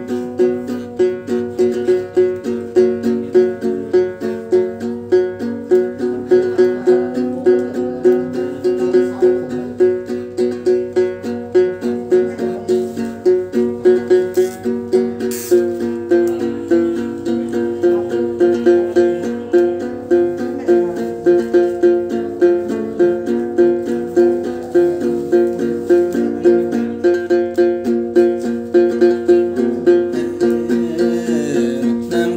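Đàn tính, the Tày long-necked gourd lute that accompanies hát then, played on its own with a steady, regular run of plucked notes that keep returning to the same few low pitches.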